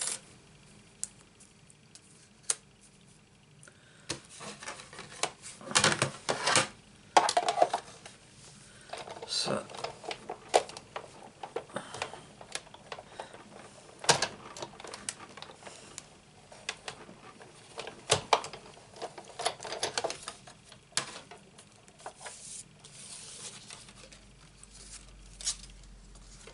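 Sizzix Big Shot die-cutting machine in use: the plastic cutting plates and a metal doily die clatter and knock as they are laid in place, then the hand crank drives the plate sandwich through the rollers to cut the cardstock. The sound is a run of irregular clicks, knocks and rattles.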